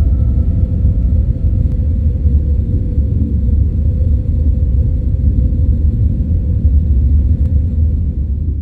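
A loud, steady deep rumble with a faint held tone above it; the last high notes of the ambient music die away within the first two seconds.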